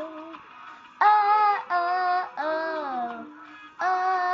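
A young girl singing a song, holding long vowel notes; about halfway through one note slides down in pitch, and a fresh note starts just before the end.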